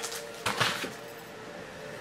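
A short rustle of handling about half a second in, over a faint steady hum.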